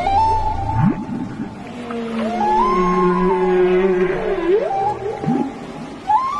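Whale song: long tonal calls that sweep up steeply in pitch, hold, and arch back down, with a lower held call under a higher one in the middle.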